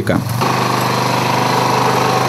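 Quad bike (ATV) engine running steadily close by, an even mechanical chatter that comes in about half a second in and holds at one pitch.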